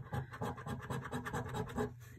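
A coin scratching the silver latex coating off a scratch card's prize panels in quick, repeated back-and-forth strokes.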